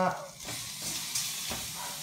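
Raw chicken breast pieces sizzling as they land in a hot stainless steel pan on medium heat, a steady frying hiss starting about half a second in.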